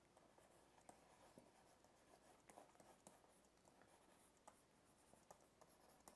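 Near silence, with faint, irregular ticks and scratches of a stylus drawing quick strokes on a pen tablet.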